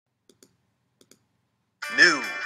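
Two faint computer mouse clicks, each a quick double tick of the button pressing and releasing, about two-thirds of a second apart. Just before the end, loud intro music starts with a falling tone.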